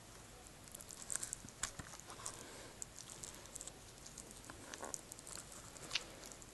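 Faint, scattered clicks and crinkles of fingers picking at the cellophane shrink-wrap on a DVD case, trying to unwrap it by hand.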